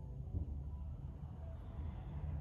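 A steady low rumble of background room noise, with no speech.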